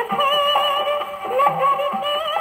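Old Hindi film song playing from a 78 rpm record on a wind-up gramophone, thin-toned with almost nothing in the high end.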